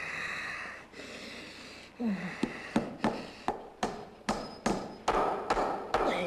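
A hammer driving nails: a quick series of about ten sharp strikes, roughly three a second, starting a couple of seconds in.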